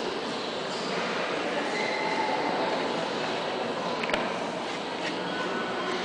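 Steady ambience of a large museum hall: an indistinct murmur of visitors' voices and echoing room noise, with a brief click about four seconds in.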